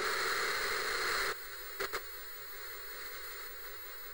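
Television static hiss: a louder burst of white noise for just over a second, then a softer steady hiss with two quick clicks near the two-second mark.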